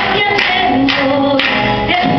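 A woman singing into a microphone, accompanied by an acoustic guitar playing chords.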